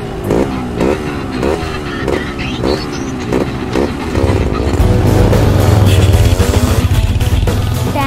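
A motorcycle engine revving loudly as the bike pulls away, with gliding pitch, over film background music. Before that, a rhythmic pattern repeats about twice a second.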